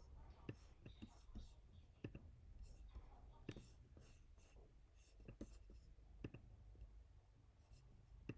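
Faint, sharp computer mouse or trackpad clicks, a second or two apart at irregular intervals, over a low steady room hum; near silence otherwise.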